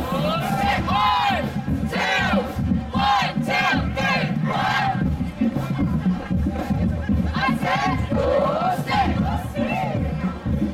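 A crowd of voices shouting and yelling at once, in many overlapping rising-and-falling calls, over a steady low rumble.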